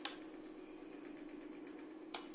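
A single sharp click of a screwdriver against a screw on the underside of a circuit board, over a faint steady hum.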